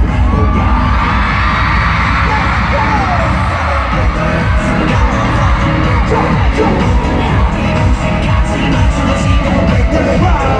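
Live K-pop song played loud through a stadium sound system, with a steady bass beat and a singer's voice, and the audience cheering over it.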